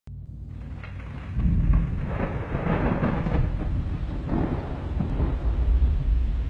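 Storm sound: a low, rolling rumble of thunder over a steady hiss of rain, fading in from silence and swelling about a second and a half in.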